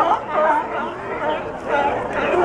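A colony of California sea lions barking, many calls overlapping continuously.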